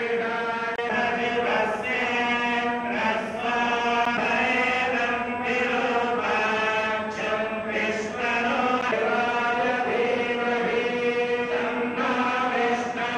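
A group of temple priests chanting Vedic hymns together in one continuous recitation, with long held syllables on a steady pitch.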